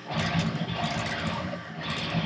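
Agile seven-string electric guitar with Seymour Duncan Blackout pickups, tuned to drop A, playing heavily distorted low metal riffing. It starts sharply just after the start, with a brief dip before the riff picks up again near the end.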